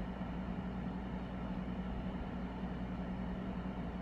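Steady low hum with a faint hiss: the lecture room's background noise picked up by the classroom microphone.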